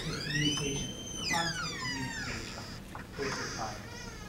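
Faint, distant speech from an audience member talking away from the microphone in a lecture hall.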